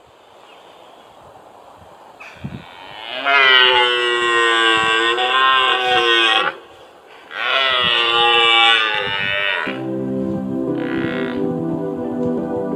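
Red deer stag roaring: two long roars of about three and two and a half seconds with a short break between them. Soft ambient music comes in near the end.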